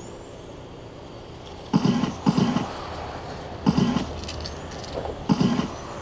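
Electric radio-controlled race cars passing close by one after another, each pass a short rush of motor whine and tyre noise, three times, over a steady low hum from a generator.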